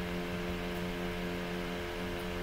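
Steady background hum made of several held tones over a faint hiss, at a low, even level: room or equipment noise.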